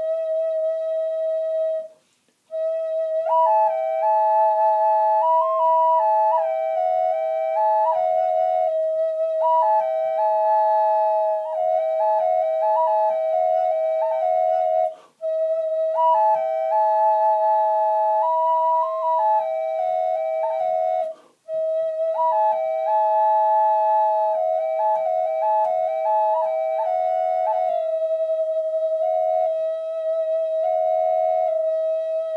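Bamboo walking-stick drone flute in E harmonic minor being played: one steady drone note held beneath a slow, stepwise melody on the second pipe. The melody comes in a few seconds after the start, and both notes stop briefly for breath about two seconds in, about halfway and about two-thirds through.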